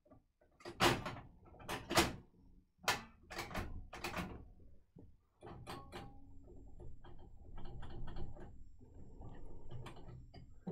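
Clicks and clunks of a vintage reel-to-reel tape recorder's transport mechanism being worked by hand, its drive band loose: a series of sharp knocks in the first four seconds, then a steadier low rattle with lighter ticks from about halfway.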